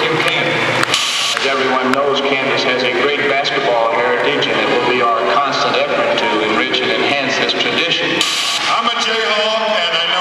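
A man speaking through an arena's public-address sound, with two short bursts of hiss, one about a second in and one near the end.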